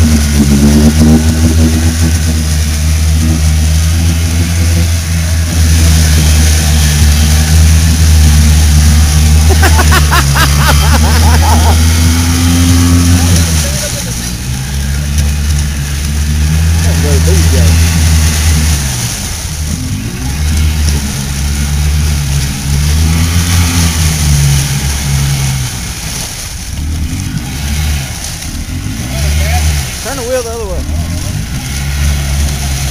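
Side-by-side UTV engine running hard and steady while stuck in deep mud, then revving up and down in repeated surges. In the second half the engine note drops in and out in short bursts.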